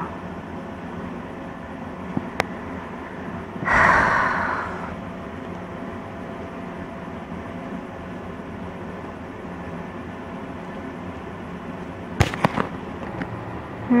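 Handling noise from a hand-held camera and dolls being moved: a sharp click, then a louder rustle about four seconds in, and a few clicks and knocks near the end, over a steady background hiss.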